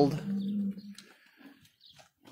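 A short, steady, low-pitched animal call, under a second long, just as the speech stops.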